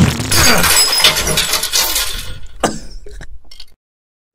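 A crash of breaking glass, loud at first and fading over about three seconds, with a few separate clinks near the end.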